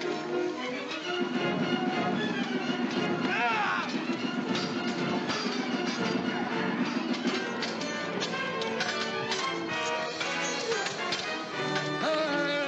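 Dramatic film score music over a fight, with men's voices shouting and a run of sharp knocks and clashes through the middle and latter part.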